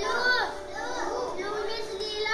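Several children's voices at once, high-pitched and overlapping, as a class speaks together.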